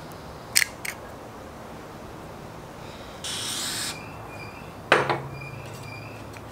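A cast-iron hand pump part being handled at a bench vise: two light metal clicks, a short scraping hiss about three seconds in, then a heavier metal clunk with a brief ring near the end.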